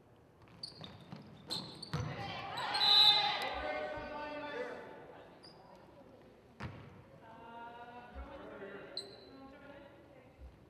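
Basketball bouncing on a hardwood gym floor, heard as a few sharp thumps, with voices shouting in the gym; the loudest shouting comes about three to five seconds in, and fainter voices return near the end.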